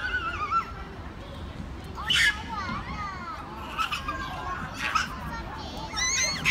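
Young children's voices at play. A high-pitched drawn-out call comes at the start, a short loud cry about two seconds in, then scattered high calls and babble.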